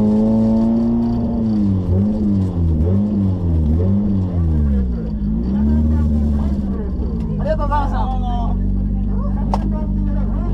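Drift car's engine heard from inside the cabin, revving up and down in quick blips about once a second, then settling to a steady idle as the car rolls to a stop. A short voice comes in near the end, and there is a single sharp click just before the end.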